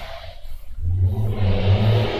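Heavy trucks passing on a busy street, heard through a window as a deep, low engine rumble that swells about a second in.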